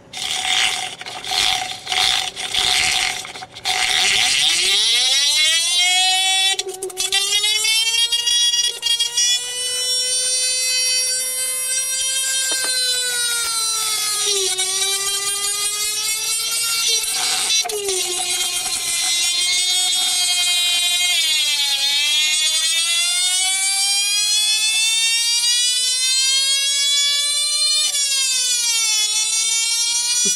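Rodin-coil sphere spinner, a 24-volt double-pulse motor, sputtering and crackling for the first few seconds. It then settles into a loud whine that climbs steeply in pitch as it speeds up, wavers, dips in pitch several times and climbs again.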